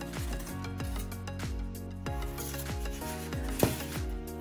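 A foam packing sheet being slid and lifted out of a cardboard box, scraping and rubbing against the card, with one sharp knock near the end. Background music with a steady beat plays underneath.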